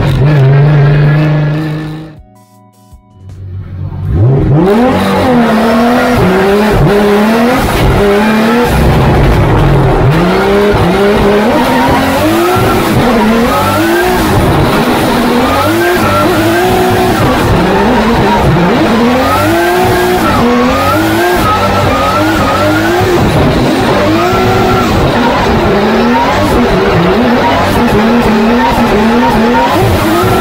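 Inside a Toyota GR86 drift car on a run: the engine revs climb and drop sharply again and again, with tyre squeal, after a brief near-silent drop about two seconds in.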